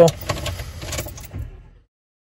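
Low rumble inside a car cabin with a few light clicks and handling noises, following the tail of a spoken word; the sound fades and cuts to dead silence near the end.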